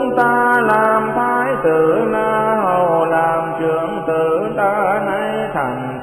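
A Buddhist sutra verse chanted in Vietnamese in a drawn-out, melodic voice with gliding pitch, over steady background music.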